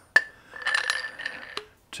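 Steel workpiece knocking against and sliding along a steel arbor shaft. A sharp metallic clink comes first, then about a second of scraping with a ringing tone, and another clink near the end.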